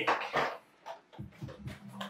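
Clear plastic blister packaging being handled and opened, with short crinkles and clicks.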